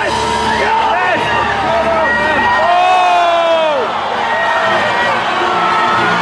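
Large arena crowd of spectators yelling and cheering, with single voices whooping over the rest and one long falling yell near the middle.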